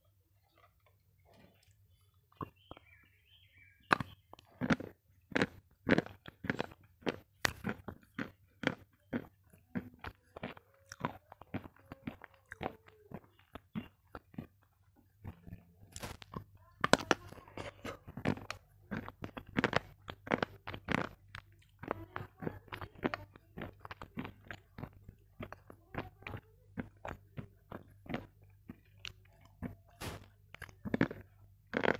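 Close-miked biting and chewing of a brittle white chalk-like stick: sharp crunches come about once or twice a second from a couple of seconds in, and become busier about halfway through.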